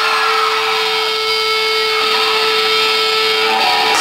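Electric guitar feedback through the stage amplifiers: one steady tone held over crowd noise, stopping shortly before the end.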